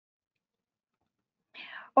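Near silence, then about a second and a half in a short breathy intake of breath just before speaking resumes.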